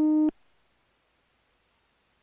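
Final note of a stepped modular synthesizer sequence: a single pitched synth tone that cuts off abruptly about a third of a second in, followed by near silence with faint hiss.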